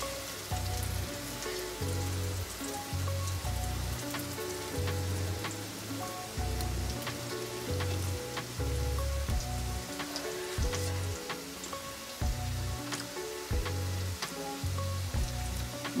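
Potato and tomato curry frying in hot oil in a kadai: a steady crackling sizzle with many small pops. Background music with a repeating bass line plays underneath.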